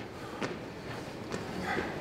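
Sneakers landing on a hardwood gym floor: a few soft, irregular footfalls, roughly half a second to a second apart.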